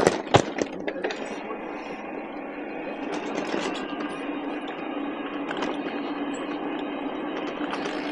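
Riding noise of an e-bike rolling over a rough dirt and gravel path: steady tyre noise with a low steady hum, and a few sharp knocks in the first second as the bike jolts over bumps.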